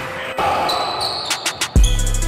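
A basketball bouncing on a gym floor amid game noise. Near the end a music track comes in with a heavy bass-drum hit and a steady deep bass.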